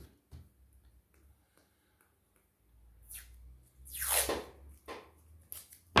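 Quiet handling noise with a few faint clicks as a ukulele string is threaded and looped at the bridge. About four seconds in comes a short tearing noise: masking tape being pulled off its roll.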